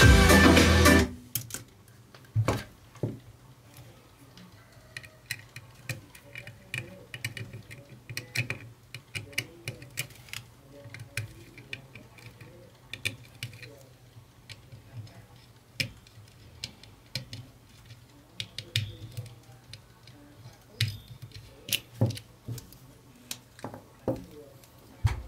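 Music playing from a phone through a Class D amplifier board into speakers, stopping abruptly about a second in. Then scattered clicks, taps and knocks of wires and the circuit board being handled on a bench, over a low steady hum.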